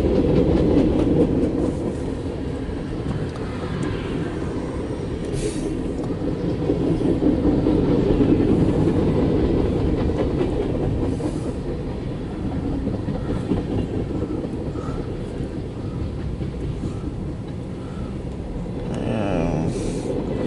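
CSX mixed freight train's cars, including tank cars, rolling past a grade crossing: a steady rumble of wheels on rail with clickety-clack, heard from inside a car.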